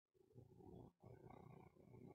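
Near silence: faint background room noise.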